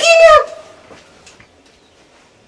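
A loud, high-pitched drawn-out call in two joined parts, ending about half a second in, followed by faint background.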